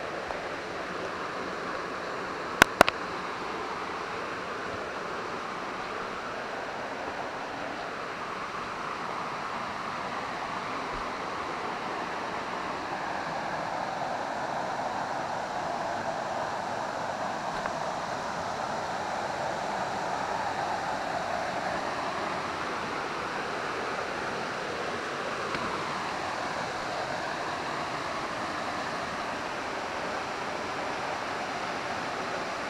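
Steady rush of a creek's flowing water, swelling a little midway. Two sharp clicks sound close together about three seconds in.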